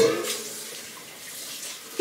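Kitchen tap running into the sink as a pot is washed out: a steady hiss of water.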